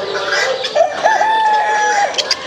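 A rooster crowing once, starting under a second in: a short rising, wavering opening, then a long level note held for about a second. Other poultry calling and clucking in the background.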